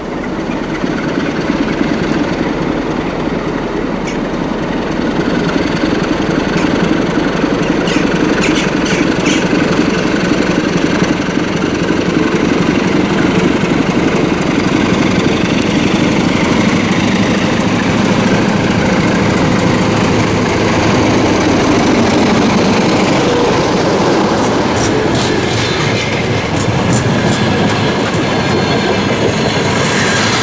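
CFR Class 60 diesel-electric locomotive pulling a passenger train out of a station, its diesel engine running under load, growing louder over the first few seconds. The coaches then roll past with wheels clicking over rail joints in short runs and a light squeal.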